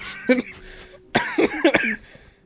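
A man coughing in a short, choppy burst a little over a second in, amid laughter.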